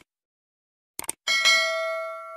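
Subscribe-button sound effect: a couple of quick clicks about a second in, then a bright bell ding that rings on and slowly fades.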